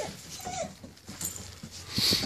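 Rottweiler puppy giving a short whimper about half a second in.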